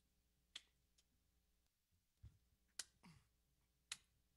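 Near silence with a few faint, scattered clicks and one soft low thump about two seconds in, as the guitar and microphone are handled.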